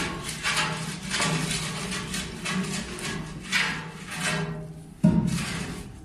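A long metal rod scraping heavy soot out of a fuel-oil-fired boiler's flue passages in repeated strokes, with a sharp knock about five seconds in. The soot is the residue of badly tuned, unmaintained burning.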